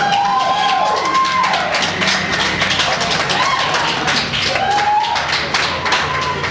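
A rock band's last chord cuts off, and a small audience claps and cheers, with a few rising-and-falling whoops over the clapping.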